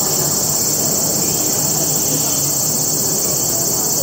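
A steady, high-pitched insect chorus drones on without a break, over a low murmur of crowd voices.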